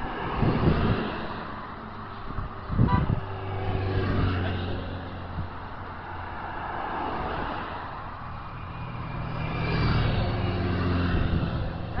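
Cars passing along the road close by, their engines humming and tyre noise swelling and fading, loudest around three seconds in and again around ten seconds in.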